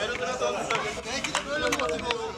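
Men's voices talking and calling out on an open-air football pitch, with a few sharp clicks or knocks in the middle of the stretch.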